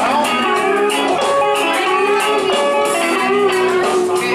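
Karaoke backing track playing an instrumental break led by guitar, with no singing over it.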